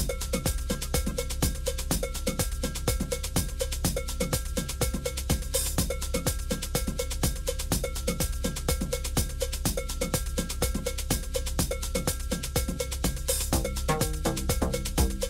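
Techno DJ mix: a steady kick drum about twice a second under a repeating cowbell-like percussion pattern, with a short cymbal swell about halfway through and again near the end.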